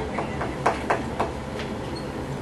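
About half a dozen light, irregular clicks and knocks in quick succession, over a steady low room hum.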